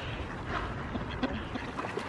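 Pond-side outdoor ambience: a steady low rumble of wind on the microphone, with a few faint, scattered calls from the ducks crowding the water's edge to be fed.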